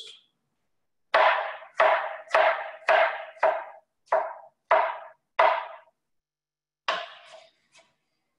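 Chef's knife chopping down through a tomato onto a wooden cutting board while dicing it. There are about eight evenly spaced knocks, roughly two a second, each with a short ringing tone, then a pause and two or three more near the end.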